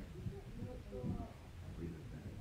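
Faint, indistinct speech: a person talking quietly or at a distance in a room, too low for the words to be made out.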